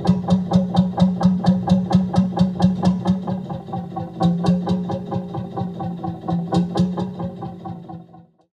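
Narrowboat diesel engine chugging steadily under way, an even beat of about five strokes a second, fading out near the end.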